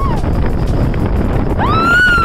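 High-pitched excited whooping from riders on a speedboat: a short rise-and-fall cry near the start and a longer one near the end, over the steady low drone of the boat's motor and rushing wind.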